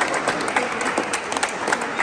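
A small group of people applauding, a dense patter of hand claps.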